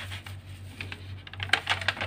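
Notebook paper rustling and crackling as a page is handled and turned over, with a louder flurry of crackles about one and a half seconds in.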